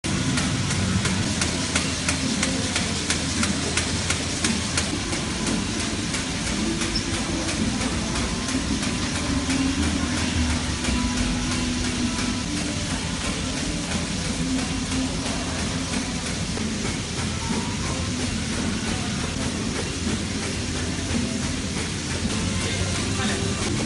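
V-bottom paper bag making machine running: a steady mechanical clatter with fast, even ticking over a low hum.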